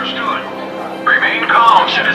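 Voices over steady background music, with the voices growing louder about a second in.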